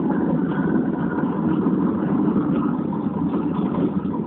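Steady engine and road noise heard from inside the cabin of a moving car.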